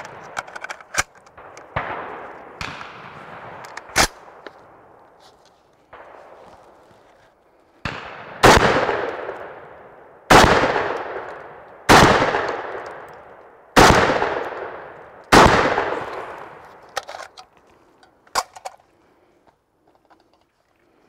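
Century Arms SAS 12 semi-automatic, box-fed 12-gauge shotgun fired five times in steady succession, about one and a half to two seconds apart; each shot echoes and dies away slowly. Before the shots come clicks and knocks of a magazine being seated, and a few sharp metallic clicks follow the last shot.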